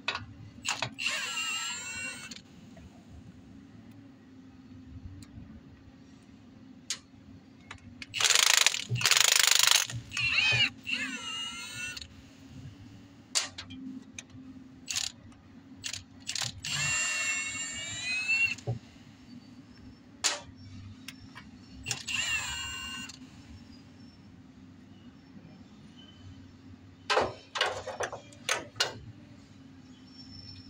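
Cordless impact driver spinning the bolts of a truck's rear differential carrier in several short runs, its motor whine dropping in pitch as each run winds down. A loud, harsh burst of hammering runs for about two seconds near the middle. A few sharp metallic clacks come near the end.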